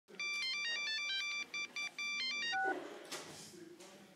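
An electronic beeping melody like a phone ringtone: quick clean notes hopping between pitches, with two short breaks. It ends on two lower notes about two and a half seconds in, followed by a soft rushing noise.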